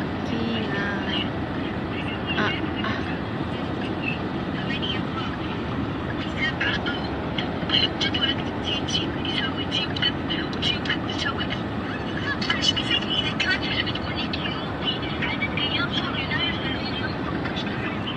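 Steady road and engine noise of a moving car, heard from inside the cabin.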